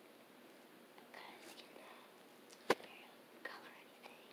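Quiet room with faint, soft whispery sounds and one sharp click a little after the middle.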